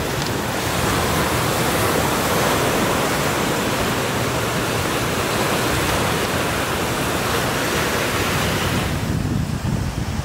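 Ocean surf washing onto the beach, a steady rushing noise with wind rumbling on the microphone underneath; the high hiss drops away near the end.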